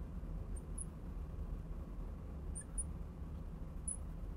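A marker writing on a glass lightboard, heard as a few brief, faint, high squeaks in small pairs over a steady low hum.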